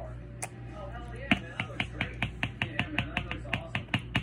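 Rapid wet mouth smacks and chewing clicks, about five a second and starting about a second in, as a child tastes a frozen sherbet push-up pop close to the microphone.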